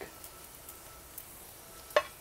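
Faint sizzle and soft dabbing as a silicone basting brush pats glaze onto a hot smoked turkey, with one sharp click just before the end.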